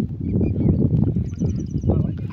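A bird gives a quick run of about six short, high chirps in the second half, over a loud, uneven low rumble.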